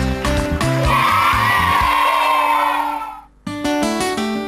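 Background music with a beat, then about a second in a burst of children cheering and screaming that fades and cuts off into a brief gap. Plucked guitar music starts near the end.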